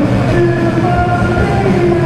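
Live rock band playing loud through the PA: electric guitars and drums, with long held notes ringing over a dense, unbroken wall of sound.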